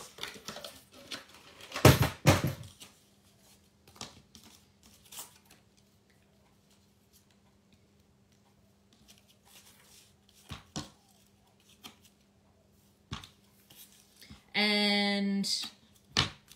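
Paper and card being handled at a craft desk. About two seconds in there is one loud rasping scrape, like card torn or dragged. Then come scattered light taps and clicks as card and strips of double-sided tape are laid down, and near the end a buzzing tone of about a second.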